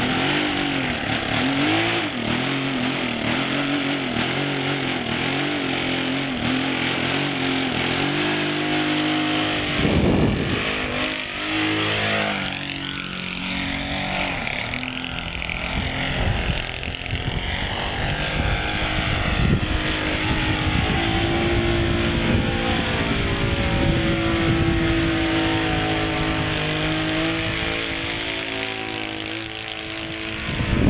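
Saito 125 four-stroke glow engine on a model aerobatic plane, running continuously. For the first eight seconds or so its pitch wavers up and down, then it rises and falls in long sweeps as the plane flies off and climbs away. Wind buffets the microphone at times.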